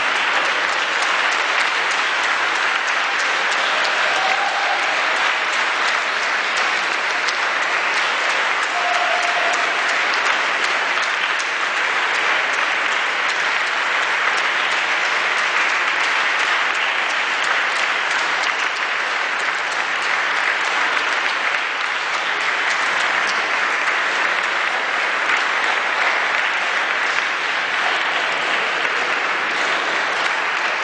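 Audience applauding: a long, steady round of clapping from many hands.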